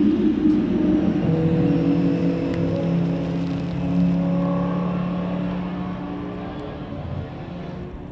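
An open-wheel racing car's engine rumbles at low revs in the pit lane for about a second. Then a Rover SD1 saloon racer's V8 runs at steady revs as the car drives away, fading toward the end.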